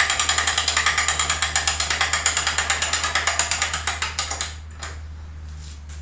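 Ratchet of a hand-crank winch on a bow tillering tree clicking rapidly and evenly, about ten clicks a second, as the drawn bow is let back down. The clicking stops about four and a half seconds in.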